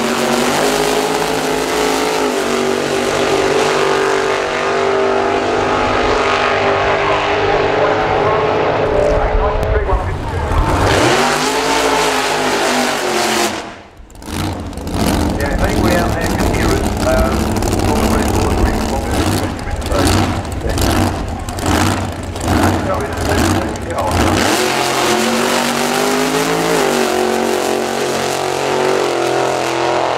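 Supercharged V8 drag-racing engines running loud on the strip: a steady rumble at first, rising as the cars rev and pull away, then a stretch of choppy, stuttering engine bursts before a steady run again.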